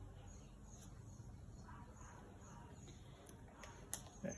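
Near silence: faint room tone, with one small click just before the end.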